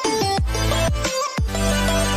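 Electronic music with a steady beat: deep bass hits that drop in pitch about twice a second under held bass notes and a synth melody.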